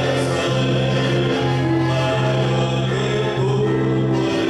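Gospel song with a group of voices singing over held bass notes that change every second or so.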